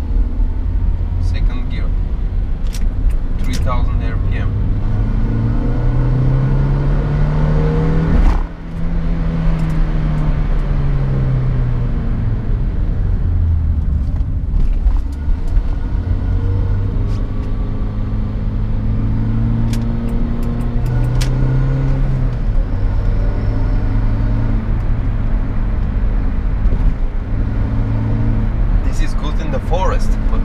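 Renault Clio 1.6 8V four-cylinder petrol engine heard from inside the cabin while driving. The revs climb, cut briefly at a gear change about eight seconds in, then drop and settle to a steady cruise.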